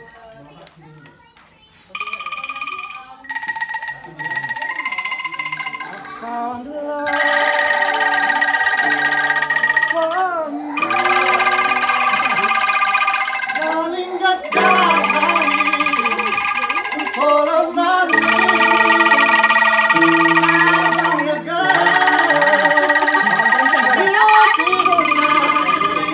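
Angklung ensemble of bamboo rattles shaken in sustained trembling chords, joined by an electronic keyboard playing bass notes. It starts with a few single notes, then full chords that change every three to four seconds.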